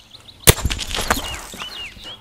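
A sudden loud crack about half a second in, followed by about a second of crackling snaps: the zap of an electric shock as two bare wires on a pressure washer are twisted together and short out. Birds chirp faintly in the background.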